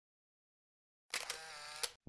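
Faint short sound effect a little past halfway, lasting under a second: a click, a steady buzzing tone, and another click where it stops. Before it is dead silence.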